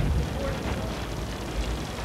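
Low, steady rumble with faint voices in the background.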